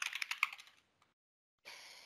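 Typing on a computer keyboard: a quick run of keystrokes during the first part, then the typing stops.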